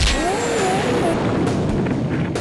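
Cartoon fight sound effects: a sharp kick-hit at the start, then a loud rushing noise with a wavering yell as the kicked thug is sent flying, and a few more hits near the end.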